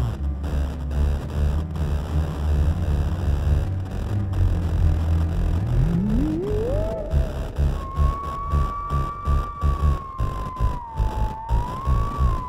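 Multi-tracked Harrison Instruments theremin music: over a low pulsing bass with a beat, one theremin voice glides steeply up in pitch about six seconds in, then holds a high wavering note that dips and rises again near the end.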